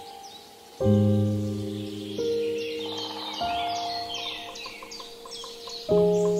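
Slow, soft piano music: a chord struck about a second in and further notes twice after, each left to ring and fade. Songbirds chirp in quick runs of short high notes over the music.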